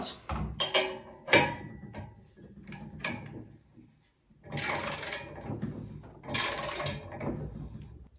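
Steel socket wrench ratcheting on the hex nut of a disc-harrow axle as it is tightened down. A few sharp metal clicks as the tools go onto the nut are followed by two longer runs of ratcheting, about halfway through and near the end.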